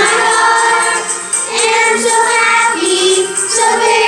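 Children's choir singing a song together in unison, with acoustic guitar accompaniment. The notes are held and flow on without a break.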